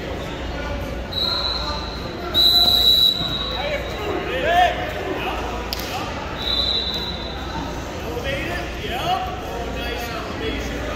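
Whistle blasts in a reverberant gym during a wrestling match: three steady high blasts, the loudest about two and a half seconds in, with voices shouting in between.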